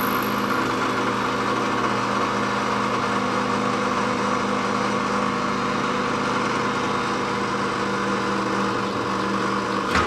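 Drill press running at 3000 RPM with a carbide-tipped masonry bit pressed into a hardened steel file: a steady motor hum under a harsh, even hiss of the carbide grinding on the hard steel. A short click sounds near the end.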